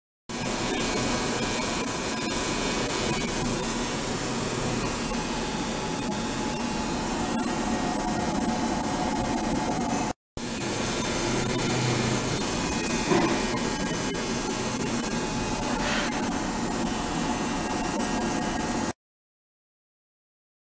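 Steady hissing noise with a faint low hum from an ultrasonic water tank setup in operation. There is a brief gap about halfway through, and the sound cuts off abruptly near the end.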